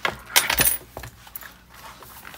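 A disc-bound planner being handled: its stack of pages is lifted and flipped over on the plastic discs. There are a few sharp clacks and a light clink in the first half second or so, then a softer rustle of paper.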